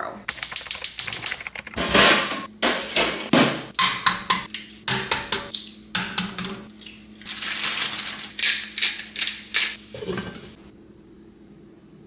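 Kitchen cooking clatter: a rapid run of sharp clicks and knocks as eggs are cracked into a frying pan and utensils and dishes are handled, over a steady low hum. The clatter stops about ten and a half seconds in, leaving only the hum.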